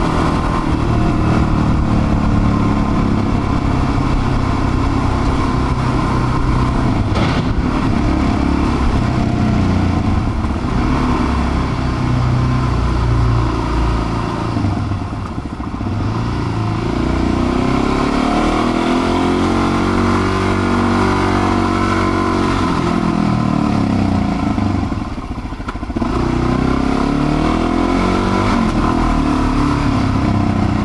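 Suzuki DR-Z400's single-cylinder four-stroke engine running under way, heard from the rider's seat. Its pitch rises and falls as the bike accelerates and eases off, with two brief drops in the sound: one about halfway through and one near the end.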